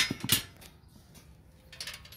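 Small metal clinks of a nut and washer being fitted by hand onto a bolt through a steel table leg: two sharp clinks about a third of a second apart right at the start, then a few faint ticks near the end.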